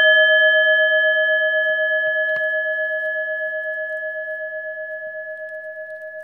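A struck bell rings out with one clear tone and higher overtones, fading slowly with a gentle wavering pulse.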